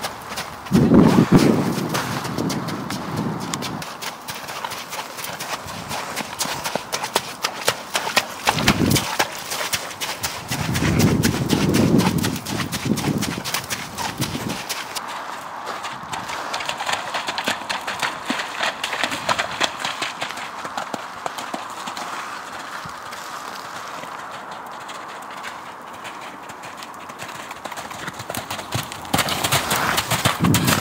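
Hoofbeats of a horse cantering under a rider on a soft, muddy sand arena: a rapid run of dull hoof strikes, clearer in the first half and fainter later on. A few low rumbles come through about a second in and again around eleven to thirteen seconds in.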